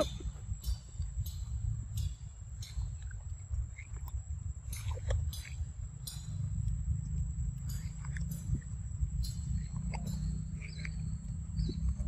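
A macaque chewing ripe mango: short, wet mouth clicks and smacks, about two a second, heard over a steady low rumble and a faint high whine.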